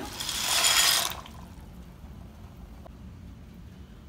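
Dry penne pasta poured from a glass bowl into a pot of boiling water: a bright rattling splash lasting about a second, then the water boiling quietly and steadily.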